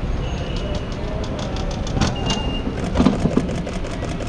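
Busy airport curbside ambience: a steady rumble of road traffic with scattered clicks and rattles, two brief high-pitched tones, and faint voices about three seconds in.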